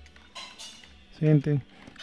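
Computer keyboard typing: a short burst of key clatter about a third of a second in.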